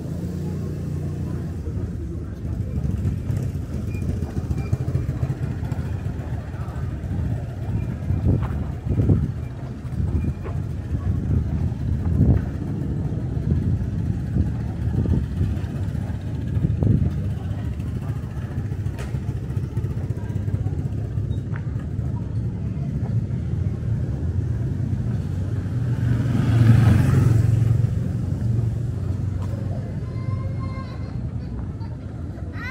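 Street sound in a narrow town lane: a motorbike engine running as a steady low rumble, with a few short knocks, and a vehicle passing close and loud about 26 to 28 seconds in.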